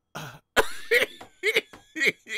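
A man laughing hard in short, loud bursts.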